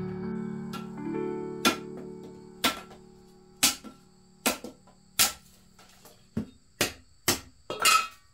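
A machete chopping thin wooden sticks: about ten sharp knocks, roughly a second apart at first and coming quicker near the end, over soft background music that fades away.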